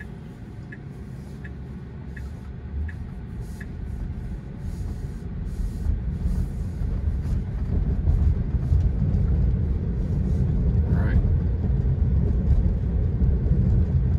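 Road and tyre rumble inside the cabin of a Tesla electric car, growing louder as it speeds up. A light ticking about every 0.7 s, typical of the turn-signal indicator, runs for the first few seconds and then stops.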